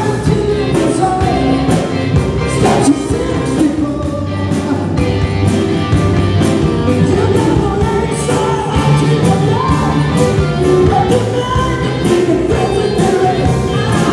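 Live rock band playing with a steady drum beat, bass and electric guitar, a shaken tambourine and a lead melody line over the top.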